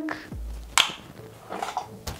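A single sharp click about a second in as the large round softbox is handled, over background music.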